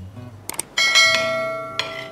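Subscribe-button sound effect: a couple of quick clicks, then a bright bell ding that rings out and fades over about a second, followed by a second, shorter ring near the end.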